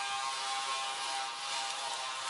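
Steady background hiss with a faint, even hum, unchanging and with no distinct events.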